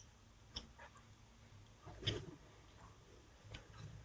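Near silence with a few faint clicks: one about half a second in, a slightly stronger short sound about two seconds in, and two tiny ticks near the end.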